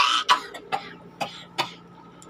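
A young woman coughing and gagging in a string of about five short, sharp coughs that grow fainter, a retching reaction to a foul-tasting Bean Boozled jelly bean.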